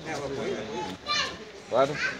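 Men talking in Sinhala at close range, with a short, higher-pitched voice cutting in about a second in.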